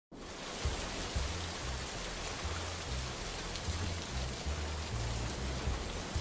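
Steady rain falling, with low bass notes shifting in pitch underneath.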